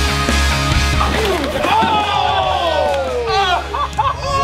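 Rock music with a heavy low beat fades out about a second and a half in. Several people then yell and shout, their voices sliding down in pitch.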